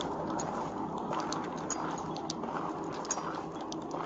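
Steady wind and road noise on a police body-camera microphone, with scattered light clicks and crunches of footsteps on the gravel road shoulder.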